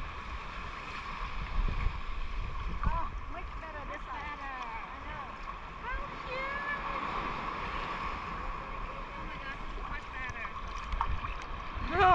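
Shallow sea water lapping and sloshing around a camera held at the waterline, with a steady low rumble of water and wind on the microphone and faint distant voices.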